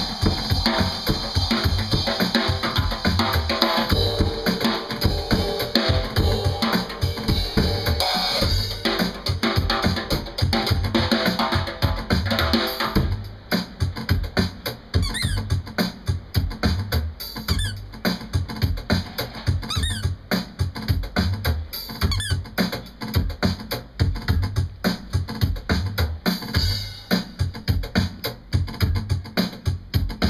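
Drum kit played hard and fast with cymbals for about the first 13 seconds, then a sparser, steady beat led by the bass drum. Short high squeaks sound a few times over the sparser part.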